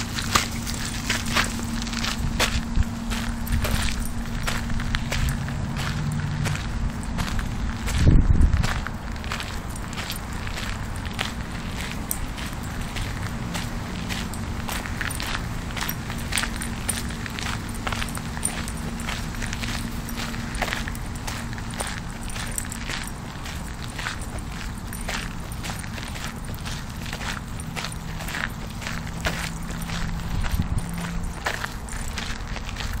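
Footsteps crunching on a fine gravel path at a walking pace, about two steps a second. A loud low rumble comes about eight seconds in.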